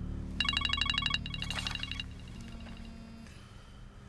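Mobile phone ringing: a rapid electronic trill that starts about half a second in, comes again more faintly, then dies away, over a low steady hum.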